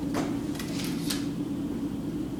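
Graphite pencil scratching across paper against a plastic triangle straight edge, four short strokes in the first second or so, over a steady low hum.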